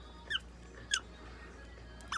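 Prairie dog giving two short, high squeaks that fall in pitch, about two-thirds of a second apart.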